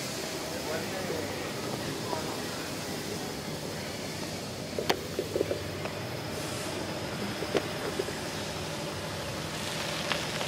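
Steady outdoor background noise with faint distant voices, and a sharp click about five seconds in followed by a few light knocks.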